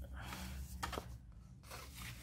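Paper and cardstock craft pieces being handled and rustled on a table, with a few light taps about a second in.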